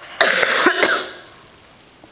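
A person coughing once, loudly, a short burst of under a second starting just after the beginning.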